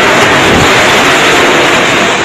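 Cyclone wind and heavy rain making a loud, steady rushing noise.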